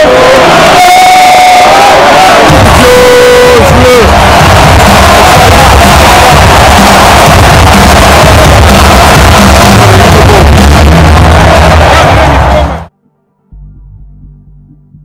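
Very loud arena music over the stadium sound system, mixed with a roaring crowd, filling the phone's microphone at full level. It cuts off suddenly near the end.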